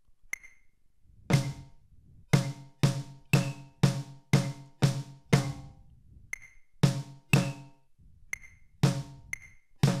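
A drum struck with sticks, playing a written rhythm: single strokes mostly about half a second apart, with rests between groups, each stroke ringing briefly. A few strokes are much lighter than the rest.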